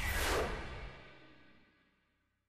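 Whoosh sound effect of an animated logo sting, with a long tail that fades away over about a second and a half.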